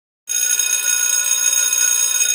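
Electric bell ringing loudly and steadily with a fast metallic rattle, starting abruptly a moment in; typical of a school class bell.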